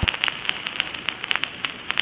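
Record surface noise: irregular crackles and pops over a steady hiss, with no voice or beat.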